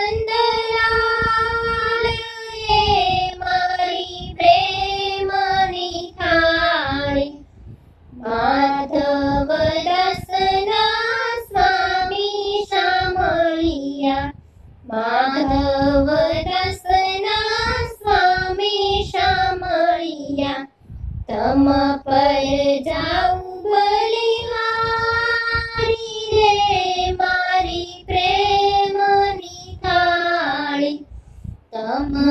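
A high voice singing a Gujarati devotional thal song to Krishna, in long melodic phrases with short breaks for breath between them.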